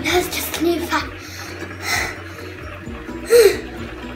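A child's wordless vocal sounds: several short cries and exclamations with sliding pitch, the loudest a little before the end, over a low steady hum.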